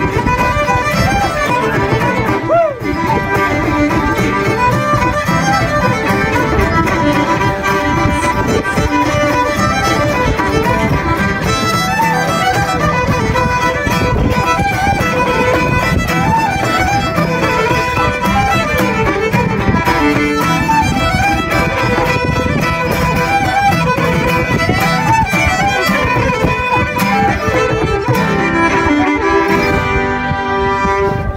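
Two fiddles, an acoustic guitar and a bodhrán frame drum playing a folk tune together.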